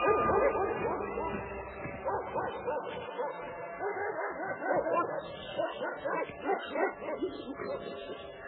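Several dogs barking and yelping over music, the whole fading down gradually.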